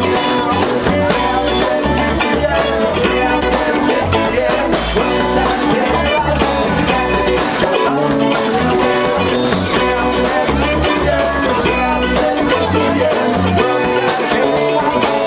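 Live band playing a song on guitars, keyboard and drum kit, loud and steady throughout.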